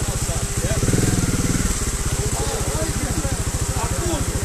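Trials motorcycle engine idling with a steady, rapid beat, a little fuller for a moment about a second in.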